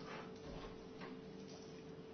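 Common salt sprinkled by hand onto a sheet of paper, making a few faint, soft ticks spread through the moment, over a steady low hum.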